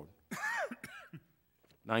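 A man clearing his throat, two short hems about half a second in.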